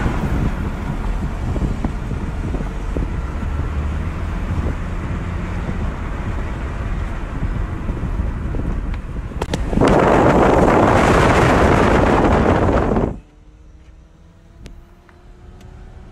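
Road and wind noise inside a moving car, with a louder rush of wind from about ten seconds in. About thirteen seconds in it cuts off abruptly to a quieter car engine whose note slowly rises as the car accelerates.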